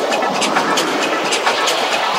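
Electronic dance music at a build-up: a noisy riser sweeping upward in pitch over steady sharp hi-hat ticks, with the bass dropped out.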